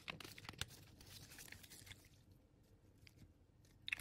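Faint, irregular crackling and clicking, busiest in the first two seconds, with another small cluster near the end.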